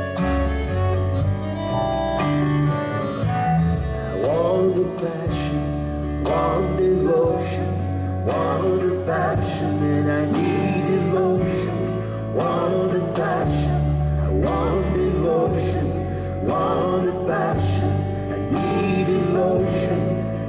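A live band plays a song on accordion, acoustic guitar, double bass and drums, with a steady beat and a deep bass line. A voice sings from about four seconds in, in a reverberant hall.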